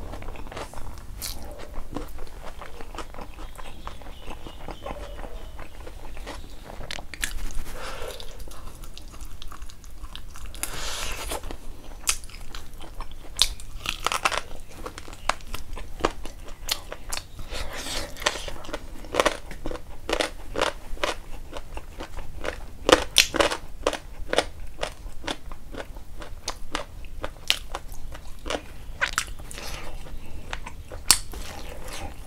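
Close-up eating sounds of rice and chicken eaten by hand: chewing and biting with many sharp, crunchy mouth clicks, coming thicker in the second half.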